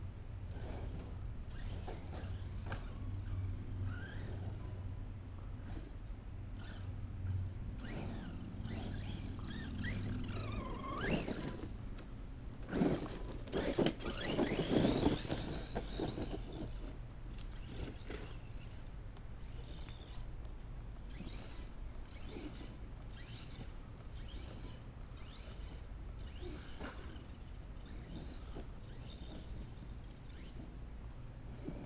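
Redcat Landslide electric RC monster truck's brushless motor whining up and down in pitch as it is throttled and braked, loudest in a burst about halfway through, with tyres and chassis rattling over dirt and gravel.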